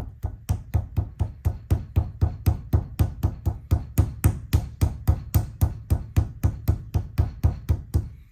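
A palm slapping a lump of soft clay flat against a stone tabletop, in a steady rhythm of about four dull slaps a second.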